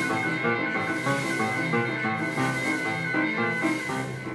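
Digital piano playing a quick, busy passage of notes at rehearsal.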